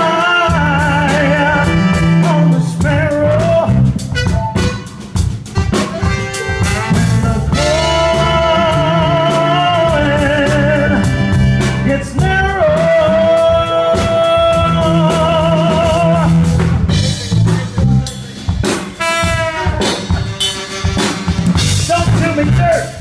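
Live band playing, with drum kit, electric bass and horns under a male singer's wordless, drawn-out vocal notes with vibrato. One note is held steady for about three seconds in the middle.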